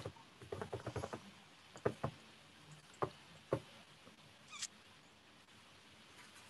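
Scattered clicks and taps from operating a computer while a slideshow is being started. A quick run of soft clicks comes early, then single sharper clicks near two, three and three and a half seconds, and a faint higher click a little later.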